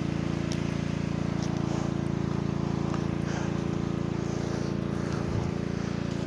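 Kingmax motor pump's engine running steadily at a constant speed, a continuous even engine drone while it pumps irrigation water through the hoses.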